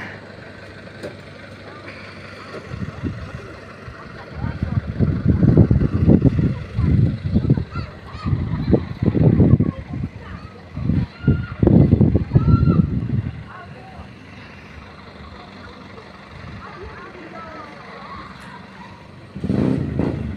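Wind gusts buffeting the phone's microphone: irregular low rumbling blasts from about four seconds in until about thirteen seconds, over a steady hiss of wind.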